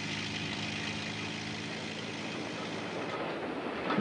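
Freight wagons rolling slowly on the rails as a small road-rail shunting tractor moves them, a steady running noise with a low engine hum underneath.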